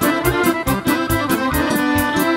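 Live Serbian folk band music led by accordion, played at a brisk dance tempo with a steady beat of about four strokes a second.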